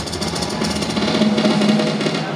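Power metal band playing live through a stadium PA, heard from far back in the crowd: fast drumming over a sustained low tone.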